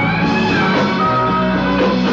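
Rock band playing live on electric guitars, bass, keyboards and drums, heard through an audience recording. A high lead line bends up and back down near the start.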